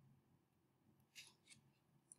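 Near silence: room tone, with two faint short clicks a little over a second in.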